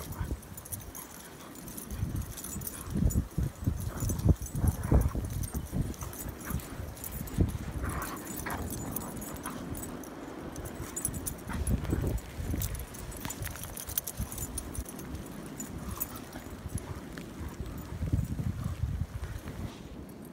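Three dogs play-wrestling in deep snow: irregular scuffling and thuds of paws and bodies in the snow, with gusts of wind buffeting the microphone.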